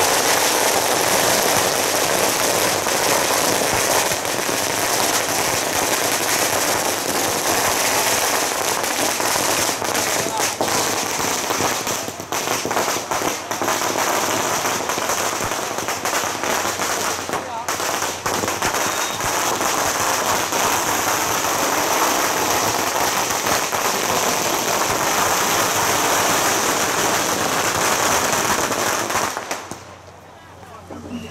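A long string of firecrackers going off in a dense, unbroken crackle of rapid bangs, which stops abruptly near the end.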